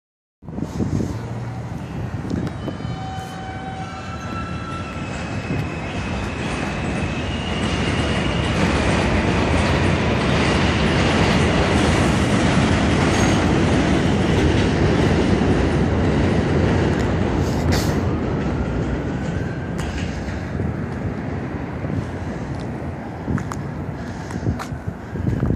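Elevated subway train passing on the el, its wheels squealing in high steady tones over the first several seconds while the rumble builds. The rumble is loudest about halfway through and fades toward the end.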